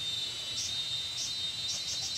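Insects chirping: a steady high-pitched trill with short high chirps repeating over it, coming faster toward the end.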